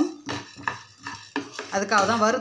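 Wooden spatula scraping and stirring barley grains as they dry-roast in a nonstick pan: a few short scrapes and grain rattles.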